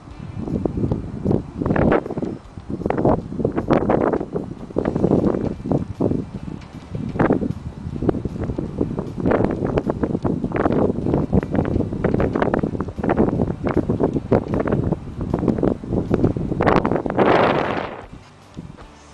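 Wind buffeting the microphone in irregular gusts, a rough rumbling noise with no steady tone, with the strongest gust near the end.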